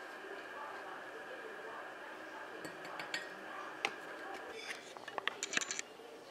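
Light clicks and taps of a plastic scoop and lid on a jar of powdered greens supplement as it is spooned into a glass of juice, with a quick cluster of clicks near the end. A faint steady high whine runs underneath and stops about three-quarters of the way through.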